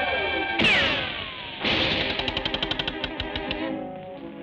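Cartoon orchestral score with sound effects for a flying golf ball: a falling whistle about half a second in, then a sudden hit followed by a fast rattle of ticks that slows and fades.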